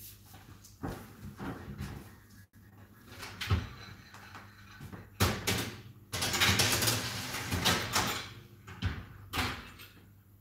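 Metal baking tray knocking as it is handled, then sliding into an oven on its rack for about two seconds of scraping, followed by a knock near the end as the oven door is shut.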